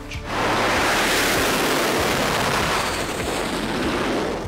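F/A-18 Super Hornet jet engines at full power for a catapult launch: a loud, steady rushing noise that comes in sharply just after the start and holds, easing a little near the end.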